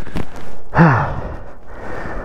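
A man's short groan of pain, falling in pitch, about a second in, after a crash that hurt his neck, followed by heavy breathing close to the microphone. A short knock comes just at the start.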